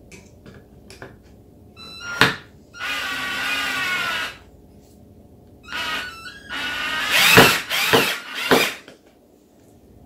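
Cordless drill driving a screw into a wooden dowel post: a sharp clack about two seconds in, a steady motor whine for about a second and a half, then a second, louder run from about six seconds in ending in a few sharp knocks.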